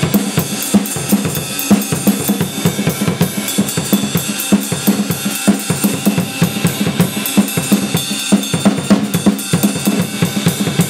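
Drum kit played solo in a fast, busy groove: kick and snare strokes in a quick steady stream under continuous cymbal wash.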